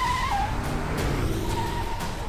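Large sedan sliding sideways in a skid: its tyres squeal in a wavering whine that breaks off briefly and comes back near the end, over the rumble of the revving engine.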